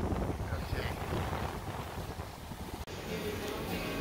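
Wind buffeting the microphone, a steady low rumble with gusts, which cuts off suddenly near the end.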